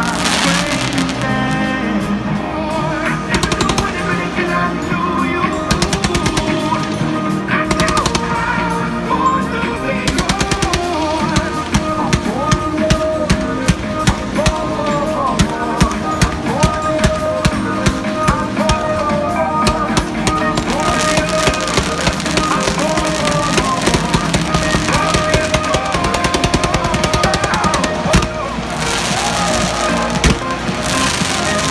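Fireworks going off in rapid strings of sharp bangs and crackles, densest through the middle, over music that plays throughout.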